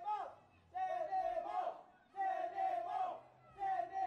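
Loud shouting voices: drawn-out yells one after another, roughly every second and a half, each sliding down in pitch at its end, with short quieter gaps between.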